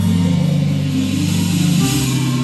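Live worship band music, mostly held low chords that change to a new chord shortly before the end.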